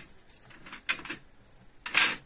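Short handling noises from a hand moving over the steel tool rest of a small tesbih lathe: a couple of brief rubs about a second in and a louder scrape near the end.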